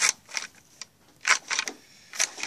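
A toy paper shredder built from Mega Bloks plastic bricks being worked by hand, its plastic parts giving a handful of sharp, irregular clicks and clacks.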